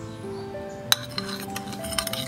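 Metal spoon clinking against a ceramic bowl while stirring sauce: one sharp clink about a second in, then lighter taps. Background music with held notes runs underneath.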